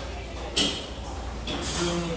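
A person slurping soup broth off a spoon at the rim of a ceramic bowl: a sharp slurp about half a second in, then a longer one near the end with a short hum.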